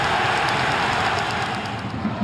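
Football stadium crowd noise: a steady roar of many voices from the stands, easing slightly near the end.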